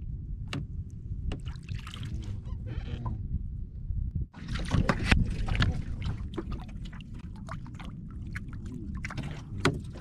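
Water splashing and lapping against the hull of a small wooden outrigger boat over a steady low rumble. The splashing is loudest about halfway through.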